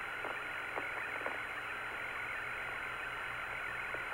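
Steady hiss of the Apollo 17 air-to-ground radio link with nobody talking, with a faint steady high tone and a few soft clicks.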